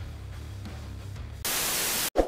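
Background music with a repeating low bass line, then about one and a half seconds in a loud burst of TV-static noise that runs on to the end, a static-noise transition sound effect.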